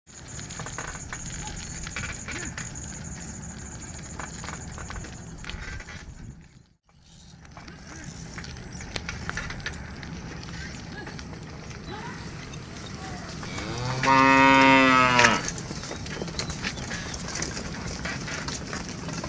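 One long, loud moo from a zebu cow in a herd walking on a road, about fourteen seconds in. Before it there is a steady outdoor background with faint scattered clicks, which drops out briefly about seven seconds in.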